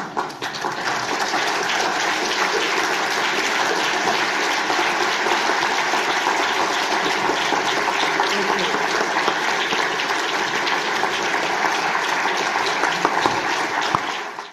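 Audience applauding steadily, the clapping swelling over the first second or so and then holding even.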